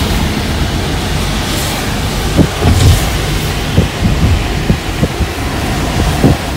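Steady road noise inside a moving car on a wet road, with irregular low thumps from a little over two seconds in.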